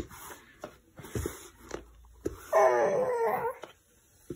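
A baby's short, wavering whine, high-pitched and lasting about a second, past the middle. A few soft taps come before it.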